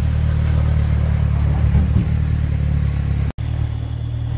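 Outboard jet motor on a jon boat running steadily at idle, a low, even drone. The sound drops out for an instant a little past three seconds in and picks up again.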